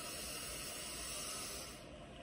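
A long, deep breath drawn in, a steady airy hiss that fades near the end: a deep cleansing breath taken before a breath hold.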